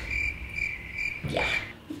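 Cricket chirping in a steady, high, thin trill that stops shortly before the end, with a woman's brief 'yeah' over it.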